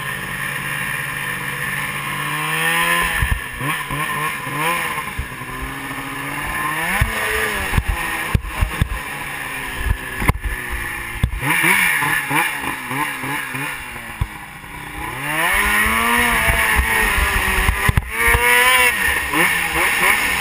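Ski-Doo Rev snowmobile with a modified two-stroke engine, ridden over snow: the engine holds a steady note, then revs up and down again and again as the throttle is worked. Several sharp knocks come through the middle, and the engine eases off briefly before revving hard again near the end.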